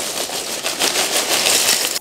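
Dry cornflakes pouring from the bag into a bowl: a steady, dense rattle of many small hits.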